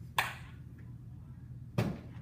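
Two sharp knocks about a second and a half apart as a mounted anatomy model board is picked up and carried, over a steady low electrical hum.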